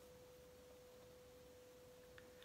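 Near silence: room tone with one faint, steady pure tone held at a single pitch.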